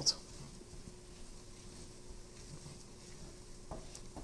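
Faint sizzling and scraping of TVP being stirred with a wooden spoon in a hot stainless steel frying pan, under a faint steady hum, with one small click near the end.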